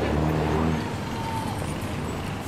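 Busy city street traffic, with a car driving past close by. Its engine is loudest in the first second and then fades into the general traffic noise.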